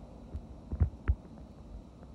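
Low, irregular thumps and rumble on a phone's microphone, with two stronger knocks close together about a second in.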